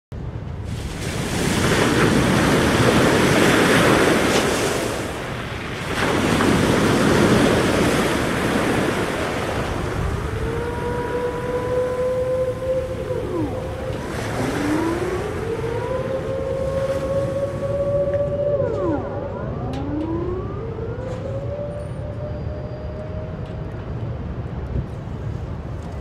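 Sea waves surging against a harbour quay, two big swells of noise. After them come long wailing tones that glide up and then hold, with quick up-and-down glides between them.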